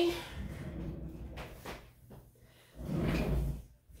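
Craft supplies being moved aside and put away by hand: faint scuffs and a few soft knocks, then a longer sliding rustle lasting about a second near the end.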